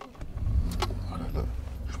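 BMW E30 engine being started: it catches readily about half a second in and settles into a steady idle.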